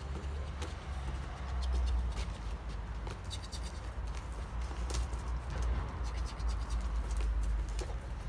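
Dogo Argentinos' claws scratching and pattering on concrete as the dogs play and jump, a scatter of short sharp clicks over a steady low rumble.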